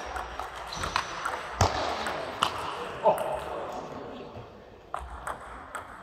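Table tennis rally: the celluloid-type ball clicking sharply off the bats and the table, a tap roughly every half second to a second, with a pause in the middle of the run of hits.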